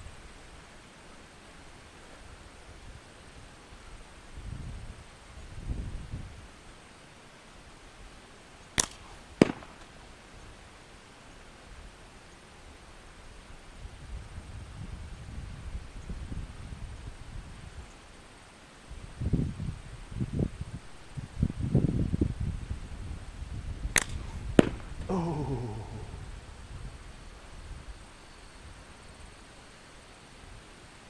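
Two slingshot shots with lead balls at about 100 feet: each is a sharp snap followed about half a second later by a smack as the ball strikes the target. After the second strike comes a brief falling rattle.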